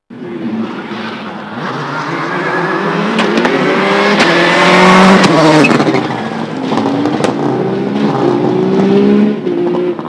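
Subaru Impreza rally car's turbocharged flat-four engine accelerating hard past at full stage pace. The revs climb and drop through several gear changes, loudest about halfway through.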